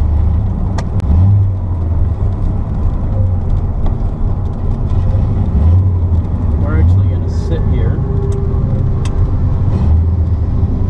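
1975 Chevrolet Corvette's V8 engine running while under way, a steady low rumble heard from inside the cabin.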